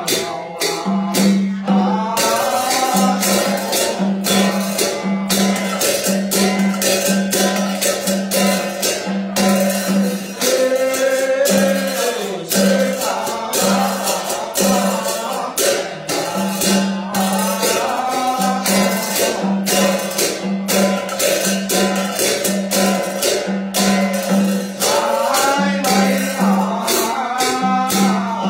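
Tày ritual music: a jingling rattle shaken in a steady, quick rhythm over a low plucked note repeated about once a second, with a voice chanting at times.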